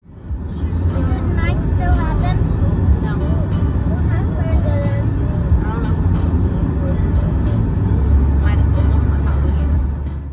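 Steady low road and engine rumble inside a moving car's cabin, with indistinct voices over it.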